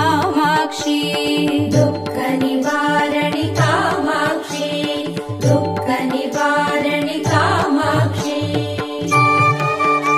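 Tamil devotional song music for the goddess Durga, in Carnatic style, with an ornamented melody line gliding over a steady accompaniment.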